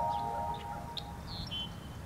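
A chiming mallet-percussion jingle rings out and fades in the first half-second, over birds chirping with short high calls and trills. The birds come from a field recording of red-winged blackbirds and other birds.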